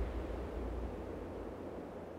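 Soft, steady rushing noise like wind, with a low rumble underneath, slowly fading.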